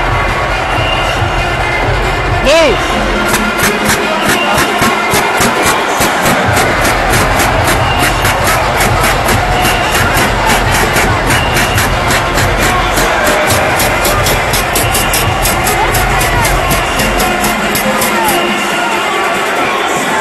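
Loud arena crowd noise, a large crowd talking and cheering, with music playing over the public-address system and a steady beat of sharp clicks, about three or four a second, through most of the stretch.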